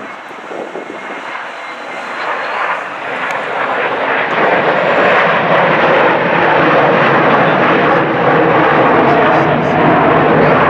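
Jet engines of a rear-engined twin-jet airliner, a Delta Boeing 717, running at power as it rolls down the runway. The engine noise swells over the first five seconds and then holds steady and loud.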